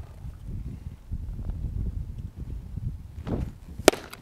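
A pitched baseball popping into the catcher's mitt: one sharp, loud crack near the end, over low background noise.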